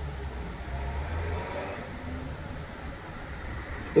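Low, steady vehicle rumble heard inside a van's cabin, without speech.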